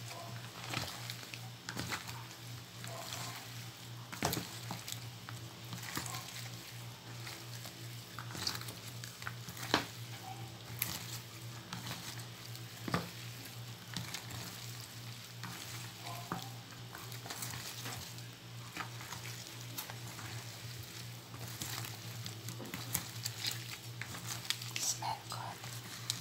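Bare hands squishing and tossing wet, salted napa cabbage leaves coated in chili powder in a plastic basin: continuous wet crackling and rustling with scattered sharper clicks, over a steady low hum.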